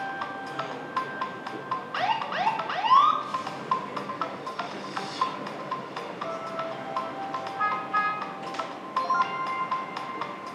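Soundtrack of a video played back in a hall: background music with a steady ticking beat and short repeated tones. About two seconds in come three quick rising sweeps, the loudest part.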